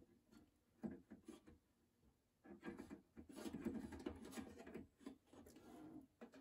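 Faint clicks and rubbing as the lever switches of an Eico 667 tube tester are set by hand for a tube test: a few quiet clicks in the first second and a half, then a longer stretch of soft rubbing and shuffling.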